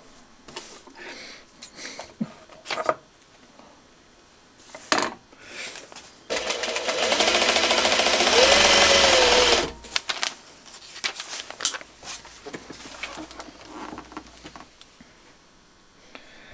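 A Juki sewing machine stitches one seam in a single burst of about three seconds, starting about six seconds in: a fast, even needle rattle. Before and after it come light rustles and clicks of fabric strips being handled and lined up.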